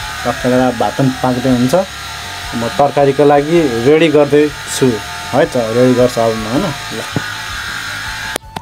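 Speech only: a man talking in Nepali.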